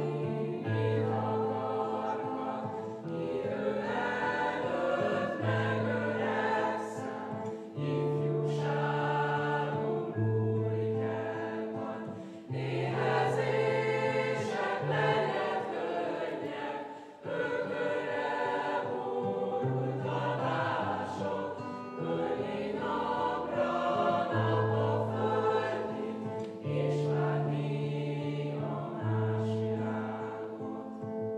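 A mixed group of young voices singing together as a choir, with acoustic guitar accompaniment and notes held for a second or two at a time.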